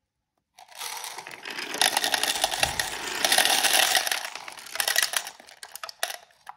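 Small beads poured slowly from a bowl onto a homemade marble machine, rattling down paper and popsicle-stick ramps and clattering into plastic cups. A dense run of rapid clicking starts about half a second in, is busiest in the middle, and thins out near the end.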